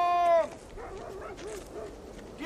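A dog barking: one long, loud bark right at the start, then a few shorter, fainter barks.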